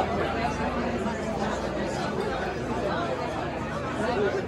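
Audience chatter: many voices talking over one another at once, with no music playing.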